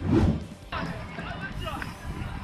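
A short, loud burst at the start. From about two-thirds of a second in, a phone recording of a street scene with several people shouting.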